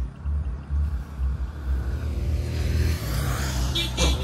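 Wind buffeting the microphone: a low, uneven gusting rumble, with a wider hiss building about two seconds in.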